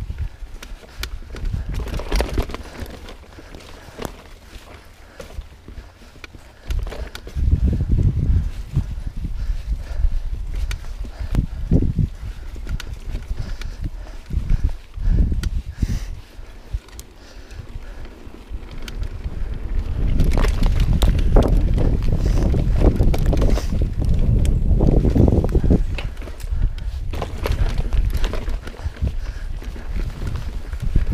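Mountain bike ridden over rough singletrack: tyres crunching on dirt, with clatter and knocks from the bike as it runs over roots and rocks, and a low rumble of wind on the microphone. It gets louder for a few seconds about a quarter of the way in, and again for much of the last third.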